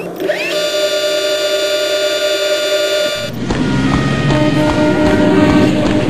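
A long, steady train horn blast that sounds for about three seconds and then cuts off suddenly. Music follows.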